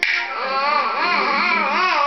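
Toddler babbling in a high, sing-song voice, the pitch wavering up and down.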